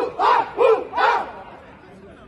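A crowd of men shouting a chant together: four loud, rhythmic shouts in about the first second, then the crowd falls to a low murmur.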